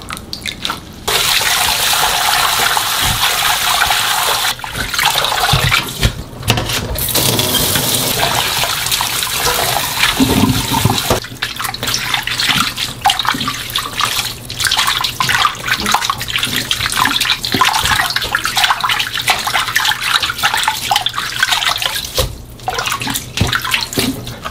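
Water running into a stainless steel bowl in a kitchen sink, then sloshing and splashing as hands swish blanched minari stems through the cold water to rinse and cool them. The steady rush gives way to choppier sloshing about halfway through.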